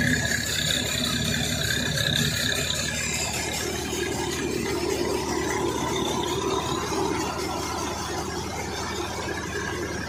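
Soybean thresher and the tractor beside it running steadily while threshing, a continuous mechanical drone with some whining tones that come and go above it.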